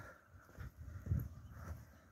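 Faint, soft footsteps on packed dirt, a few low thuds about half a second apart, from someone walking slowly.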